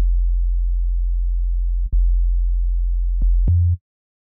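Sine-wave synth bass playing on its own: a long, low held note, restruck about two seconds in with a click, then two shorter, higher notes. It stops just before the end.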